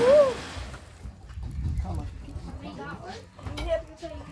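People's voices: a short rising-and-falling exclamation at the start, then faint talking, over a steady low rumble.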